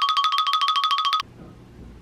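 Censor bleep laid over a spoken word: a high electronic tone, rapidly pulsing, that cuts off suddenly a little over a second in, leaving quiet room tone.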